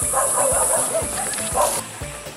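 A dog barking a few short times, the loudest bark near the end, over a steady high buzz that cuts off suddenly just before the end.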